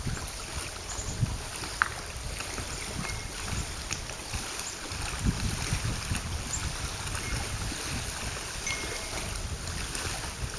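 Wind buffeting the microphone in an uneven low rumble, over small waves lapping at a lake shore. A few faint, short high-pitched chirps come through, and there is a single click about two seconds in.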